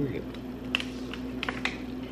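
A handful of small, sharp clicks and taps, about six in two seconds at an irregular pace, over a steady low hum.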